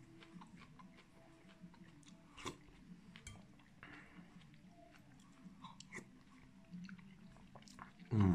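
Faint sounds of a person chewing and eating soup, with scattered small clicks and one louder click about two and a half seconds in.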